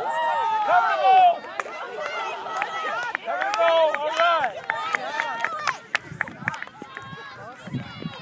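Several high-pitched young children's voices shouting and calling out at once, overlapping, loudest in the first second and a half and thinning out near the end.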